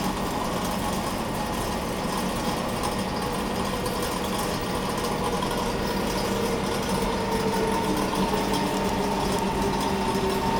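SMRT C151 train pulling into an underground station behind platform screen doors, its motor whine falling in pitch as it slows, growing a little louder over the second half. A steady low hum runs underneath.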